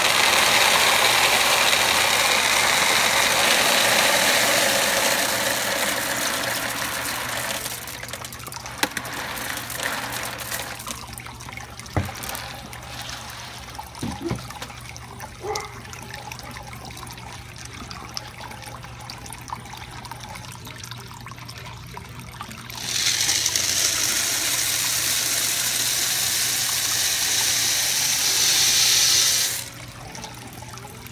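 Expanded clay pebbles being poured into a water-filled aquaponics grow bed, heard from underwater: a loud rushing, splashing pour that fades out by about a quarter of the way in. A few scattered knocks follow, then a second pour starts about two-thirds in and stops abruptly near the end.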